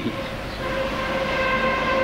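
A steady droning tone with several overtones, starting about half a second in and slowly growing louder.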